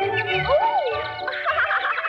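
1930s cartoon orchestral score with imitated bird calls: quick high chirping whistles, a sliding whistle that rises and falls about half a second in, and a fast warbling flutter in the second half.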